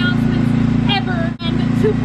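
Steady hum of the electric blower that keeps the inflatable bounce house up, with a high voice over it. All the sound cuts out for an instant about a second and a half in.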